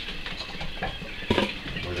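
Cardboard scoop scraping and scooping soiled bedding across the floor of a plastic brooder tote: a continuous rustling scrape, with one sharper knock about a second and a half in.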